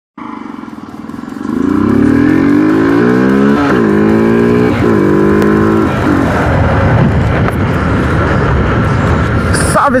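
Honda CG 125 Fan's single-cylinder four-stroke engine ticking over, then pulling away about a second and a half in, its pitch climbing and dropping at two gear changes. From about six seconds on, the engine is buried under the steady roar of wind and road noise at speed.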